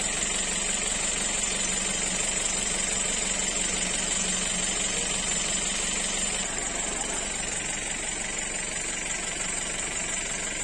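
Small outboard motor on an inflatable rescue boat running steadily, easing off a little about six and a half seconds in as the boat comes in to the bank.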